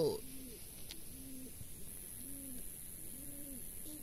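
A dove cooing: about five short, low coos, each rising and falling in pitch, spaced under a second apart.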